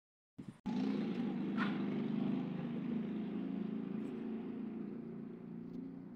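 A motor vehicle engine running steadily on the street, cutting in abruptly after a brief silent gap and slowly fading over the next few seconds.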